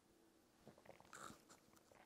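Faint lip smacks and small mouth clicks of someone tasting a mouthful of orange soda, starting about half a second in.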